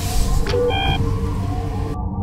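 A short electronic beep from a starship control panel as its button is pressed, about two-thirds of a second in, over a steady low rumble.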